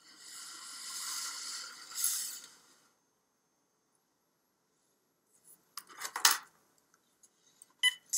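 Handling of a cordless phone on a wooden table: a rubbing noise for about three seconds, then after a pause a cluster of clicks and knocks as it is picked up, and short key beeps near the end.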